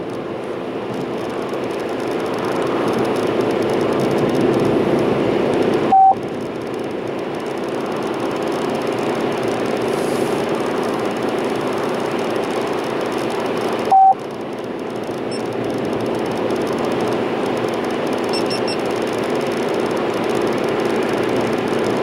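Steady road and engine noise inside a car cabin at highway speed. Two short single-pitch beeps come about eight seconds apart: the on-hold tone of an OnStar call playing over the car's speakers.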